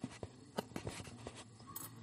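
Faint, irregular small clicks and taps, several a second, in a quiet room.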